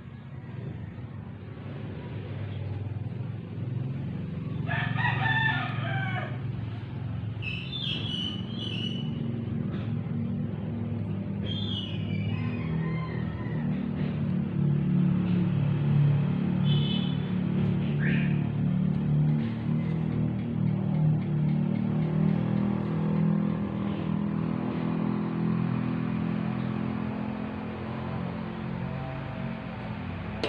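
Roosters crowing in the background, a string of crows starting about five seconds in, the first one the clearest. Under them a low drone grows steadily louder.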